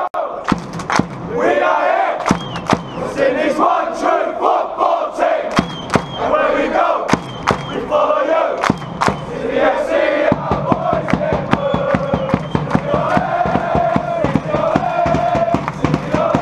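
A large group of football supporters chanting and singing loudly in unison, with a hand-held bass drum beaten along and sharp strikes throughout.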